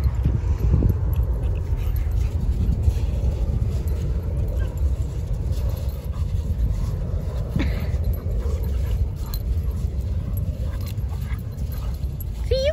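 Two small dogs play-wrestling, with faint dog yips and growls over a steady low rumble of wind on the microphone.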